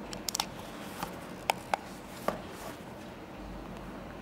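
Handling noise from Beats Executive over-ear headphones being worked by hand at the hinge and headband: a scatter of short, sharp clicks, the loudest two close together about a second and a half in.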